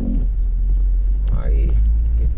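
Low, steady rumble of a car driving at walking pace, heard from inside its cabin, growing louder about one and a half seconds in.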